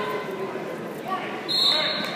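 Referee's whistle: one short, shrill blast about one and a half seconds in, over the steady murmur of spectators in a large echoing hall.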